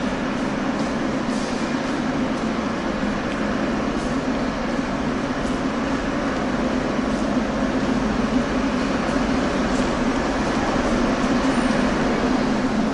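Steady, loud rumble and hum of an underground metro station, with a train standing at the platform.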